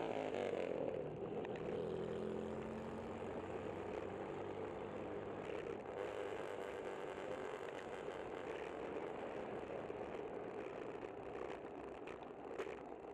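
A vintage car's engine passing close alongside, its note dropping as it goes by and fading over the first few seconds. Steady rushing wind and road noise from the moving bicycle follows.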